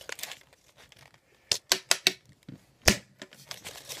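Folded paper fortune teller being handled in the hands: faint paper rustling, with a quick run of sharp clicks and snaps about a second and a half in and one louder snap near three seconds.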